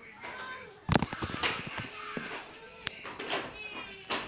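Cartoon soundtrack playing from a television: a sudden loud bang about a second in, then music and a man's speaking voice.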